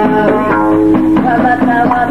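Middle Atlas Amazigh folk music with a plucked loutar, the three-string Amazigh lute, playing a melody of quickly changing notes.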